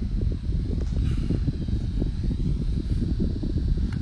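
Steady low background rumble with no clear pitch or rhythm.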